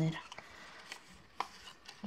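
Small craft scissors snipping through scrapbook paper: a few short, sharp snips, the loudest about a second and a half in.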